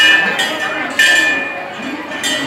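Temple bell struck twice, about a second apart, each strike ringing and fading, over crowd voices.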